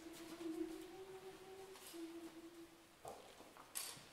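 A faint hummed note, held for about three seconds with a small step down in pitch partway through, given to the choir as its starting pitch. A short breathy hiss follows near the end.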